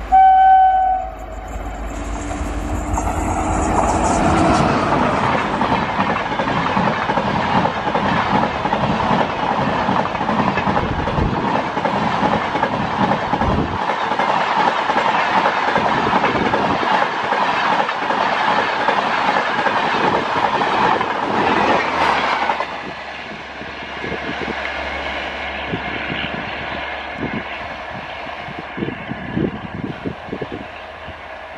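A WAP-5 electric locomotive sounds its horn briefly. Its express train then passes at speed, with a loud rush and clatter of coach wheels on the rails lasting some eighteen seconds. About 22 seconds in the level drops sharply, leaving a fainter rumble and scattered rail clicks as the train draws away.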